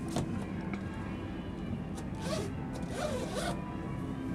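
Uneven bars creaking and rasping twice, about two and three seconds in, as a gymnast mounts and swings on the bar. A sharp knock comes at the very start, over a steady hubbub from the arena.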